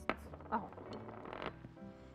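Silicone whisk stirring a medium-thick egg-and-flour batter in a glass bowl: a light tap against the glass at the start, then soft wet stirring, under quiet background music.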